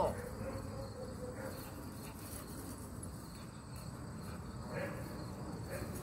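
Insects trilling steadily in the background, a thin high continuous sound over a low outdoor rumble.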